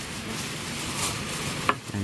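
Steady hiss of light rain pattering, with a short sharp click or crinkle a little before the end as a plastic bag is handled.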